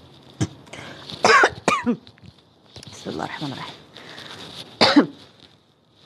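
A woman coughing in a fit: a run of short, harsh coughs in the first two seconds, a softer voiced stretch, then one more loud cough near the end.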